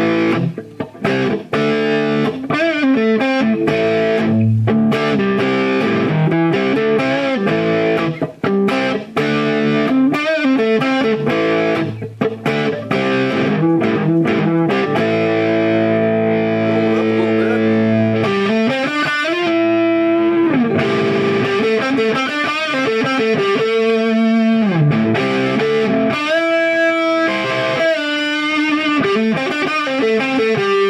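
Gibson SG Standard electric guitar played through an amplifier with distortion, on its 490 neck humbucker: sustained chords and melodic lines that ring on, with a few short breaks in the first few seconds and quicker note changes in the second half.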